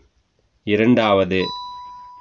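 A single bell-like chime sounds once about one and a half seconds in, ringing at a steady pitch and fading slowly.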